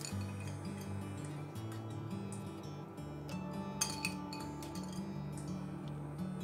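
Background music with steady low notes, over light clinks of a glass bowl against a ceramic baking dish as diced ham is tipped out of it; the sharpest clinks come about four seconds in.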